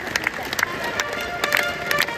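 Live brass fanfare from a marching band, with trumpets playing held notes, over sharp claps from the crowd clapping along in time.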